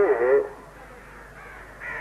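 A man's voice preaching in Urdu through a microphone. It draws out a single word in the first half second, then pauses for about a second and a half, leaving only faint room noise, before speaking again near the end.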